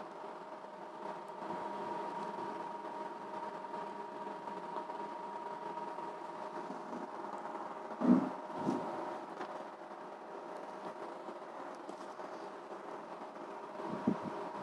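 Steady room hum with two faint steady tones running under it, and a brief bump from the phone or page being handled about eight seconds in.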